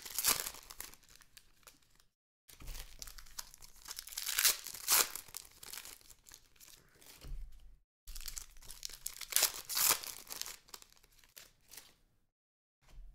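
Foil trading-card pack wrappers being torn open and crinkled by hand, in irregular crackly rustling bursts, the loudest just after the start, around four and a half seconds in and around ten seconds in. The sound cuts out to dead silence briefly about two seconds in and again about eight seconds in.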